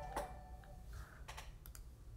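A few faint, sharp clicks of someone working at a computer, while the tail of a chime-like alert tone fades out in the first part.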